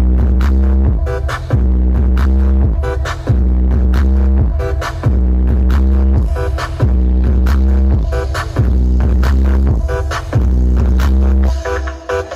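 Electronic dance music played loud through a large outdoor 'horeg' sound system stacked with subwoofers. Long, deep bass notes repeat with short breaks every second or two under a steady beat.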